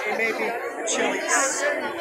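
Several people talking at once in casual conversation, the words too mixed to make out.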